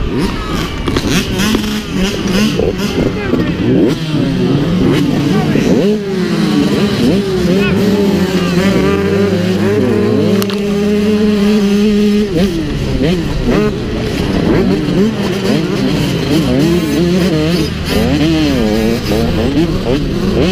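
Off-road motocross bike engines revving hard at a race start, the onboard bike's engine loudest, its pitch climbing and dropping again and again with throttle and gear changes, other bikes running close by.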